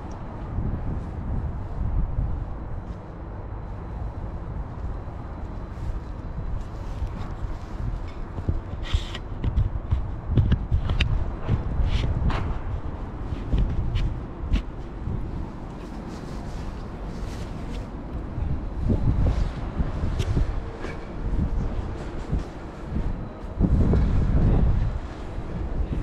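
Outdoor walking ambience: wind buffeting the microphone as a gusty low rumble, with footsteps and scattered sharp clicks, and a stronger gust near the end.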